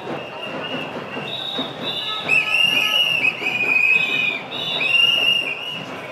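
Shrill whistles blown in short, repeated rhythmic blasts among a walking crowd, with a longer wavering blast in the middle. Underneath runs the general noise of the crowd.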